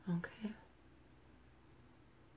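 A brief, quiet two-syllable utterance in a woman's voice right at the start, then faint room tone.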